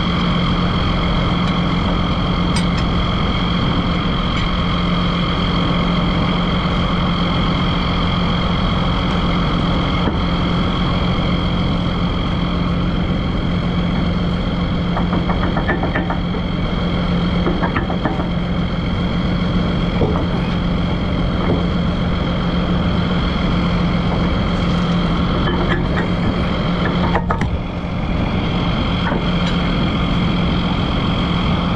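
Heavy diesel engine idling steadily. A few light metallic clinks and knocks come from a steel ripper pin being worked out of its bore, around the middle and again near the end.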